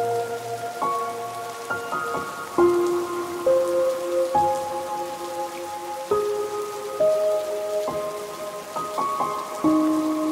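Steady rain sound with a slow, soft melody on top: single sustained notes struck about once a second and left ringing, as in relaxing ambient music.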